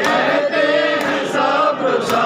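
An Urdu noha (mourning lament) led by a man singing into a microphone, with a crowd of men chanting along. Sharp slaps of chest-beating (matam) keep time about once a second.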